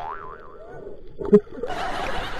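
A cartoon-style boing sound effect: a pitch that wobbles up and down, then a lower sliding tone, followed past the middle by one short, loud thump.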